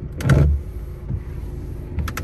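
The windshield wiper of a 2018 Chevrolet Sail is switched on at the steering-column stalk. There is a brief knock-and-sweep about a quarter second in, over a steady low cabin hum, and two quick clicks at the end.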